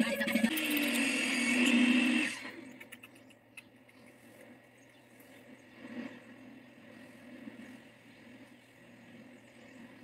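A voice for about the first two seconds, cutting off suddenly. Then faint room tone with a few soft bumps.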